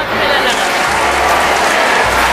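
A crowd applauding, a dense steady clatter of many hands, with voices mixed in.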